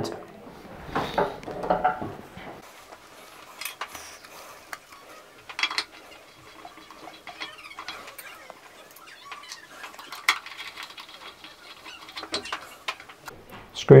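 Light clinks and clicks of chrome tap parts being handled and screwed back on by hand at a ceramic bathroom basin: a handful of separate sharp ticks, the loudest about six seconds in.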